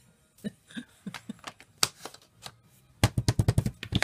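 Scattered light taps and clicks of wooden rubber stamps being handled on a craft table, then about a second of rapid, louder tapping near the end.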